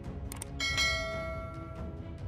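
A bright bell chime sound effect, the notification ding of an animated subscribe button, strikes about half a second in and rings out for over a second, just after two quick clicks. Background music with a steady beat runs under it.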